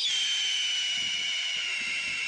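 A steady high-pitched tone that slides slowly down in pitch.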